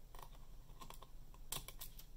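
Faint small clicks and ticks of a thin tool prying under a tiny antenna-wire connector on a laptop's M.2 Wi-Fi card, with a quick cluster of clicks about one and a half seconds in.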